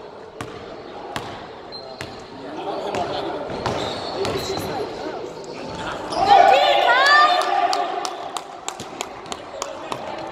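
Basketball dribbled on a hardwood gym floor, sharp bounces echoing in the hall, with players' voices in the background. About six seconds in comes a quick run of high rising squeaks, sneakers on the hardwood, the loudest moment.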